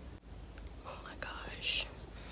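Soft whispered vocal sounds from a woman, with a short hiss near the end.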